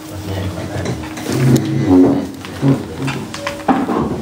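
A man's voice chanting in a low register, loudest around the middle, over a steady low hum that fades out about halfway through.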